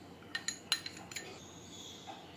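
A metal spoon clinking lightly against a glass bowl about four times in the first second or so, with a faint high ringing after the strikes.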